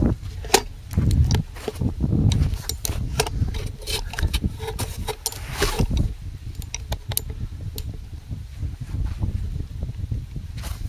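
Wind rumbling on the microphone and handling noise as the camera is moved and set in place, with scattered clicks and knocks and one sharper knock about half a second in.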